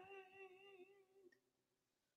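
The last held sung note of a song, wavering slightly, fading out within the first second and a half into near silence.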